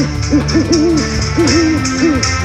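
Cartoon owl hooting: a string of short rising-and-falling hoots, over steady background music.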